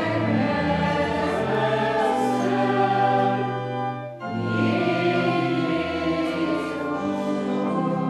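Choir singing a hymn with organ accompaniment, in two phrases with a short break about four seconds in.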